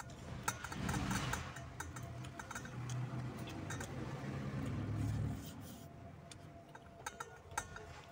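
Fingers mixing rice in a stainless steel bowl: repeated light clicks and short metallic pings as fingers and a finger ring knock against the bowl, with chewing. A low rumble underneath swells from about one second in and fades just past five seconds.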